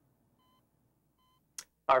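Hospital bedside patient monitor beeping faintly, one short steady tone about every three-quarters of a second.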